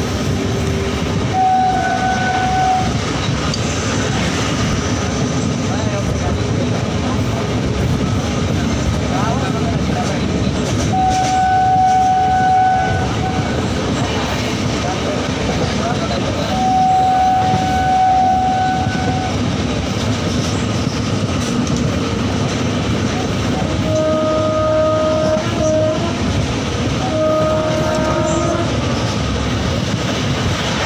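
Passenger train running, its wheels and carriage rumbling steadily as heard from an open doorway, with the train's horn sounding three times for one to two seconds each, then twice more at a lower pitch near the end.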